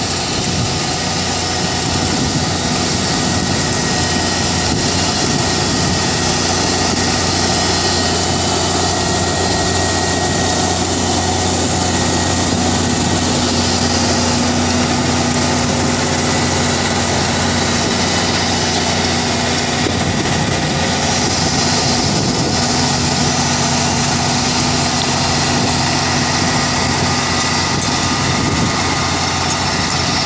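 Deutz-Fahr Agrotron TTV 7250 tractor's diesel engine running steadily under load while it pulls tillage harrows through the soil, a constant engine drone under a steady hiss.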